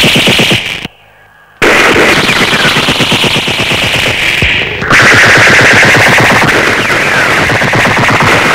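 Rapid automatic machine-gun fire from a film soundtrack, shot after shot in quick succession. It breaks off for well under a second about a second in, then resumes, changing tone about five seconds in.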